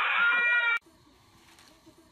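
High-pitched squealing screams from children, stopping abruptly less than a second in, followed by near silence.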